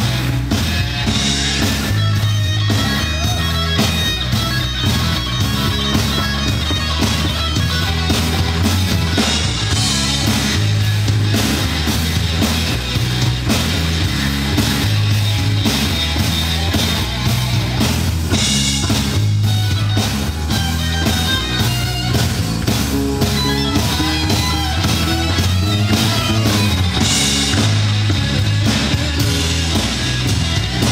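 Live rock band playing an instrumental passage: a Stratocaster-style electric guitar plays over a steady bass line and drums.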